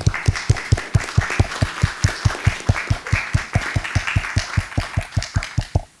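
An audience applauding, with one pair of hands close by clapping evenly about five times a second over the lighter clapping of the room; it stops abruptly near the end.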